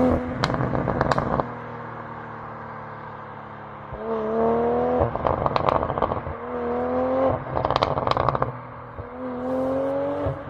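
BMW 840i Gran Coupé's turbocharged straight-six exhaust as the car pulls away. The engine note rises in three short pulls, and each time it cuts off the exhaust follows with a burst of pops and crackles.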